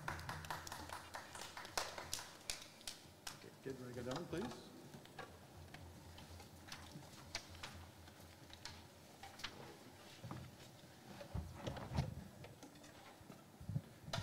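Quiet room with scattered small clicks and knocks, more frequent in the first few seconds, and a few faint, low voices, one saying "please" about four seconds in.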